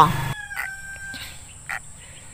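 Faint, drawn-out fowl call, its held note fading out about a second in, over a steady high hiss.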